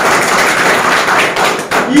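A group of people clapping: a dense, steady patter of many hands that stops near the end, where a man's voice comes back in.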